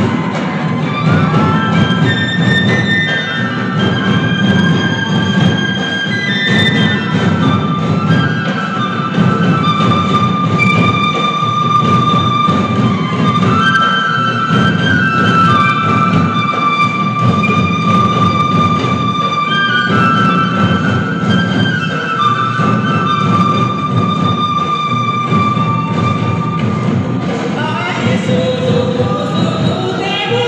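Santhali folk music for a Sarhul dance: barrel hand drums beat a dense, steady rhythm under a high melody of long held notes that step up and down.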